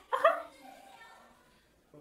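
A woman's brief, high-pitched excited yelp right at the start, fading into faint background sound.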